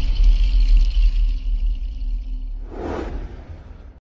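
The closing sting of a TV channel logo: music with a deep rumble that fades away, and a whoosh about three seconds in.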